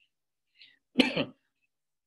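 A man clears his throat once, a short sharp cough-like sound about a second in, after a faint breath; otherwise near silence.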